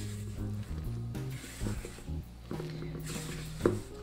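Background music with a low bass line, over faint scraping as a spatula stirs flour and sourdough starter into a dough in a stainless steel mixing bowl.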